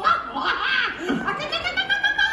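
Audience laughing.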